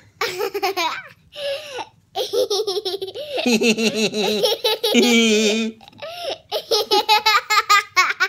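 Two people laughing in bursts of quick pulses, broken by short pauses, with a fresh run of rapid laughs near the end.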